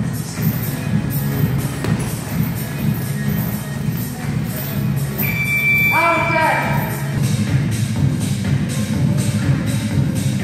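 Music with a steady beat; a brief pitched sound, a voice or a note in the music, comes about six seconds in.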